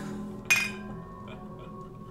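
Glassware clinking together in a toast: one sharp clink about half a second in that rings on briefly.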